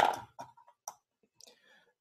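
A few light, isolated clicks of metal drafting instruments being handled and set down in their fitted case.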